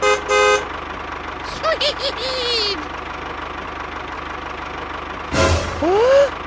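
Two short horn toots, then a tractor engine running steadily with a fast low throb. Brief squeaky cartoon-style voice chirps come in about two seconds in, and a louder burst of sound comes near the end.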